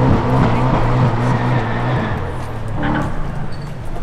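A car's engine revving as the car pulls away, its pitched note holding and then fading out over the first couple of seconds.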